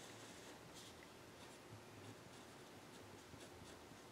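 Faint scratching of a pen writing on paper, in short irregular strokes.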